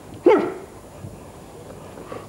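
A man's single short, sharp gagging noise about a quarter second in, falling in pitch: a seasick retch.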